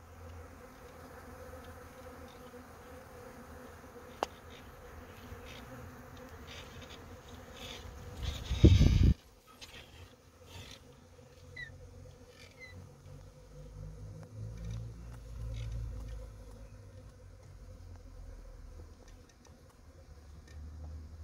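A newly settled honeybee swarm buzzing steadily, the hum of many bees clustered on a branch. About eight seconds in, a brief loud rumble lasting about a second breaks over it.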